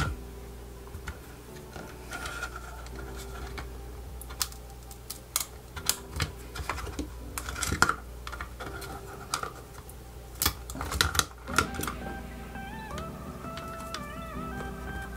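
Scattered small clicks and creaks of hard plastic as a Logitech G930 headset's earcup housing is worked apart by hand, over quiet background music.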